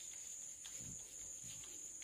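Chalk scratching and tapping faintly on a blackboard as words are written. Under it is a steady high-pitched whine, with a few faint low sounds.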